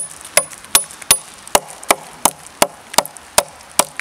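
A CRKT Ma-Chete machete chopping into a dead log in a quick, even series of about eleven light strikes, roughly three a second, some with a brief high ring from the blade. The blows land with the forward part of the blade, where the chops do little.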